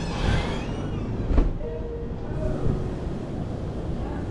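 Steady low rumbling background noise with a single sharp knock about a second and a half in, followed by faint thin whining tones.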